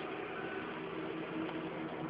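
Steady background hiss with a faint low hum: room tone.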